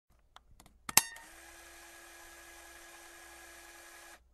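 A floppy disk being pushed into a computer's disk drive. A few light clicks come first, then a sharp clack about a second in as the disk seats, then a steady whirring hum from the drive.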